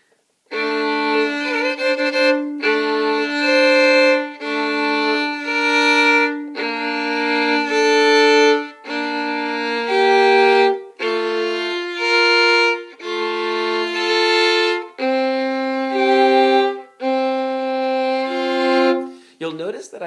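Solo violin played slowly, bowing sustained double stops (two strings sounding together) in a series of short phrases separated by brief breaks.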